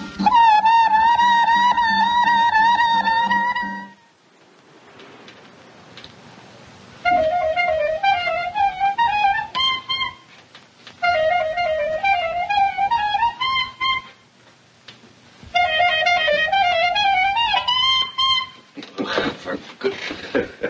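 Clarinet playing: a long held note, then after a pause the same short rising phrase played three times over, each try breaking off at the same high note. It is a player stumbling over the fingering of a passage.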